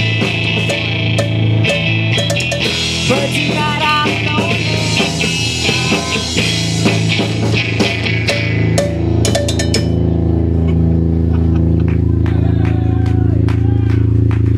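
Live rock band playing: distorted electric guitars through Marshall amps and a drum kit with frequent cymbal crashes. The playing breaks off about nine seconds in after a quick run of cymbal hits, leaving a steady low drone from the amplifiers.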